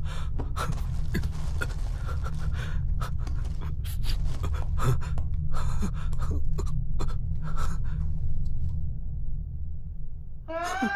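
A man gasping and panting in ragged, irregular breaths, over a steady low rumble. The breaths thin out near the end.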